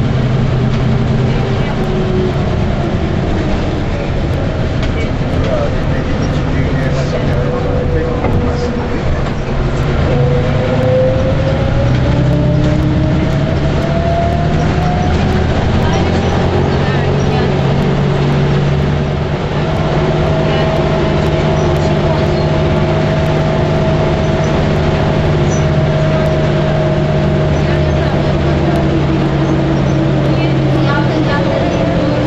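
City bus engine and drivetrain running as the bus drives, heard from inside the cabin: a steady low hum with a whine that rises in pitch about ten seconds in and settles to a nearly level tone from about twenty seconds.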